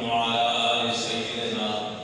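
A man's voice, amplified through a microphone, holding one long drawn-out intoned phrase at a nearly steady pitch that fades just before the end.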